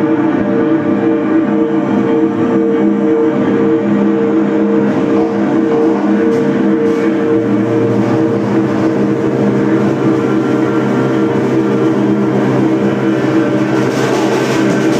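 Live amplified band drone: several held, unbroken tones from electric guitar and amplifiers sounding together as one loud, steady chord, with a lower bass tone joining a little past halfway.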